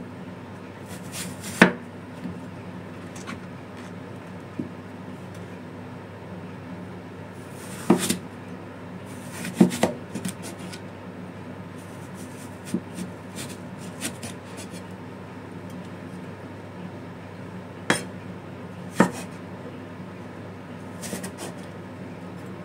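Steel cleaver cutting eggplant on a round wooden chopping block. A handful of sharp knocks, from the blade striking the board, come at irregular intervals several seconds apart, with fainter cuts in between. A steady low hum runs underneath.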